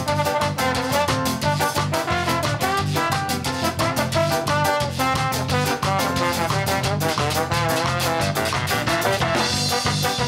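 Ska-jazz band playing live: a horn section of saxophone and trombone over drum kit and bass, with a steady beat.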